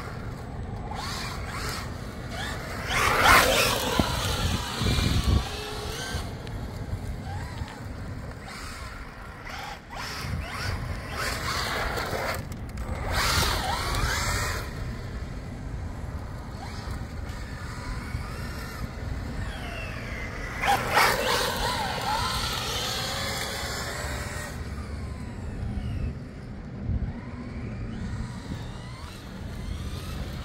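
Traxxas Ford Raptor-R RC truck's brushless electric motor whining up and down in pitch as it is throttled hard and let off, loudest in two passes about three seconds in and again around twenty seconds in.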